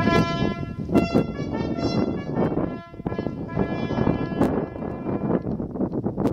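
A lone brass ceremonial call in a pause between phrases: one note hangs faintly for the first couple of seconds over a steady outdoor background rumble, with a few sharp knocks.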